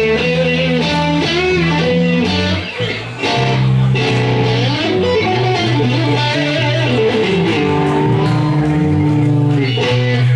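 Electric guitars playing a slow blues live, a lead line of bent, sustained notes over steady low notes.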